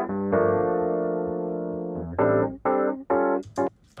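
Rhodes electric piano part from a multitrack mix, run through FabFilter Saturn 2 saturation. A held chord slowly decays over about two seconds, then comes a run of four short, detached chord stabs.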